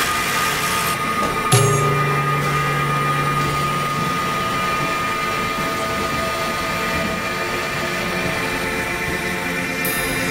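Dense layered experimental electronic mix of several tracks sounding at once: a steady drone of held tones over hiss. About a second and a half in, a sudden entry brings a low held tone that lasts a couple of seconds.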